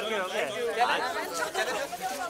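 Chatter of several people talking over one another in a small street crowd.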